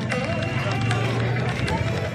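Crowd of people walking in a flag procession: many overlapping voices, with music in the background and a low hum for about a second in the middle.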